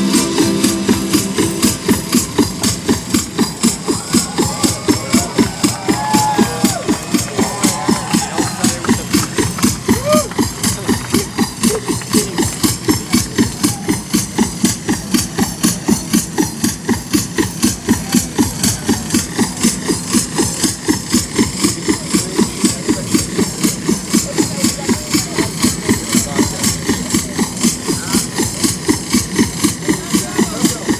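Live music played over a concert PA, with a steady, fast pulsing beat of about three pulses a second. A few gliding pitched sounds rise and fall over it near the start.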